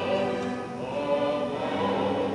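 Live operatic music on stage: sustained singing with instrumental accompaniment.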